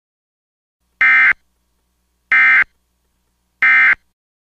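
Emergency Alert System SAME end-of-message data bursts: three short, identical, buzzy digital chirps about 1.3 s apart, the code that marks the end of the alert.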